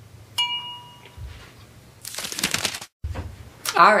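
A glass tea mug clinks once, a short bright ding that rings briefly, followed a little later by a short noisy sound.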